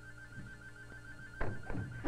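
A telephone ringing with a pulsing, trilling tone over background music. About one and a half seconds in there is a sharp thunk, and the ring cuts off at the end.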